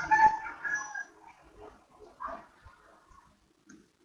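Short high-pitched whining cries, bunched in the first second and coming again briefly about two seconds in.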